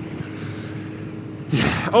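Kawasaki Z900RS inline-four running steadily at cruising speed, heard faintly under wind noise on the helmet microphone.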